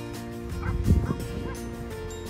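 Background music with a few short honking bird calls, like distant geese, between about half a second and a second and a half in. A brief low thump near one second in is the loudest thing heard.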